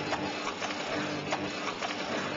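Office photocopier running: a steady hiss with faint clicks every half second or so.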